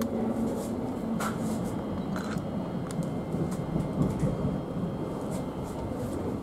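Running noise inside a moving Thameslink Class 700 electric train carriage: a steady rumble with a low hum that fades within the first two seconds, and a few sharp clicks and rattles.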